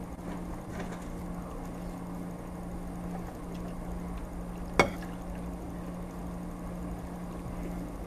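Quiet eating: spaghetti being slurped and chewed, with one sharp click of a metal fork against a ceramic plate a little before the five-second mark, over a steady low hum.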